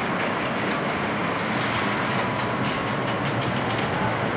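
Interior running noise of a Tatra T3 tram: a steady rumble of the car and its running gear, with light clicks through most of it.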